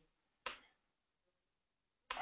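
A single short computer-mouse click about half a second in, otherwise near silence.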